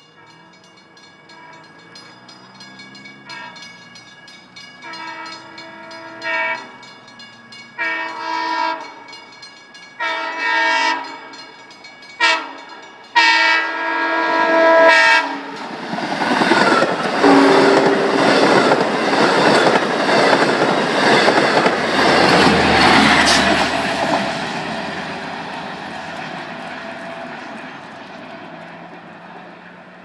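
Long Island Rail Road diesel-hauled push-pull train with bilevel coaches sounding its horn in a series of blasts as it approaches, the last ones long, long, short, long, the grade-crossing signal. It then passes close by loudly, with wheel clatter and a deep rumble from the diesel locomotive at the rear, and fades away.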